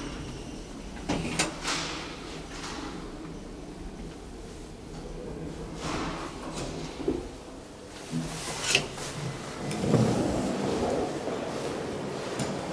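A Bauer elevator running, with a steady low hum broken by several sharp clicks and clunks. About ten seconds in, a louder rushing sound comes as the doors open.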